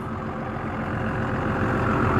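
Rear-mounted 5.9-litre Cummins ISB turbo diesel idling steadily, getting gradually louder.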